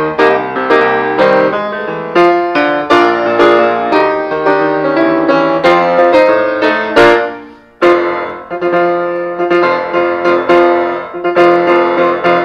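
Grand piano played solo in a jazz style, dense chords and runs. It stops briefly a little past the middle, then comes back with a loud chord.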